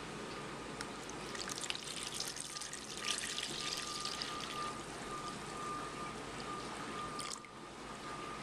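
Thin molasses-and-water mixture poured from a cup into a plastic tub over rusty steel wrenches, splashing and trickling. The pour starts about a second and a half in and stops suddenly near the end.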